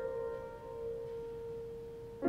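Soft piano music: one held note slowly fading away.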